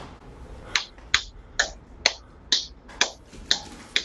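One person applauding with slow, steady hand claps, about two a second, starting under a second in.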